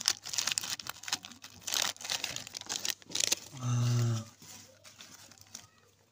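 Foil-lined plastic snack wrapper crinkling and crackling as it is handled. About halfway through, a short, steady, low-pitched tone cuts in and stops, followed by a few softer crinkles.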